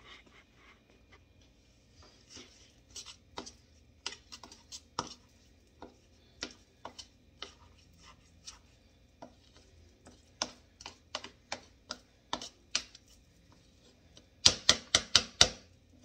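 A wooden spoon tapping and scraping against a plastic funnel set in a glass jar as diced vegetables are pushed down through it: scattered light clicks, then a quick run of louder taps near the end.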